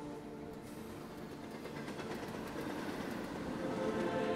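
A rumbling, clattering noise that grows louder toward the end, standing in for the music.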